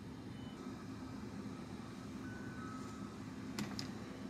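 Car engine idling, a steady low hum heard inside the cabin, with two light clicks near the end.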